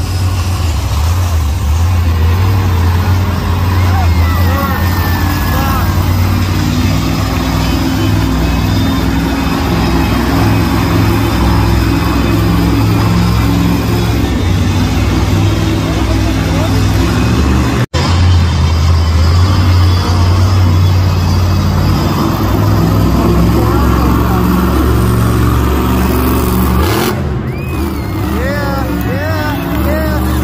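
Monster truck engine running loud and steady in an indoor arena, its revs rising and falling as the truck drives the course, with a booming public-address voice and crowd underneath. The sound cuts out for an instant about two-thirds of the way through.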